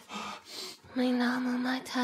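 A few soft, breathy gasps, then a single steady vocal note held for about a second.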